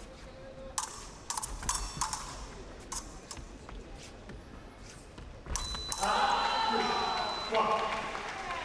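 Épée blades clicking against each other in a quick series of sharp metallic contacts. About five and a half seconds in, a touch lands and the electric scoring machine sounds a steady high tone for about two seconds, with loud shouting over it.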